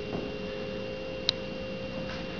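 A steady electrical hum made of a few fixed tones, one low and one high, over faint room noise, with a single small click about a second and a half in.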